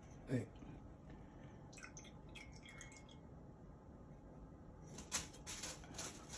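Faint clicks and light knocks, as a cup and a pod coffee brewer are handled: a scattered few about two seconds in, with a brief faint tone, and a louder cluster near the end.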